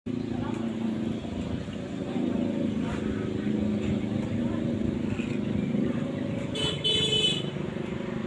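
A motor vehicle engine running steadily, with a short horn toot near the end.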